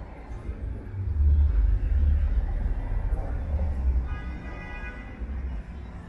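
Street ambience with an uneven low rumble, and a short snatch of music about two-thirds of the way through.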